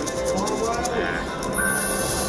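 Siberian Storm video slot machine playing its free-spin music while the reels spin and stop, with a quick run of ticks in the first second and a steady tone coming in about a second and a half in. Voices talk underneath.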